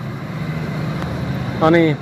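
Steady low drone of a motor vehicle engine running close by, with no change in pitch. A man's voice starts near the end.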